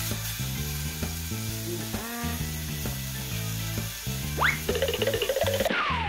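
Chicken breasts sizzling in a frying pan as a spatula turns them, over background music with a stepping bass line. The sizzle cuts off suddenly near the end.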